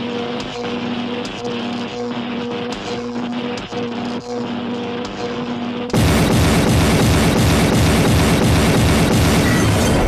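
Background music with a pulsing beat and held low notes. About six seconds in, a sudden, much louder cartoon explosion sound effect takes over with a dense crackling rumble.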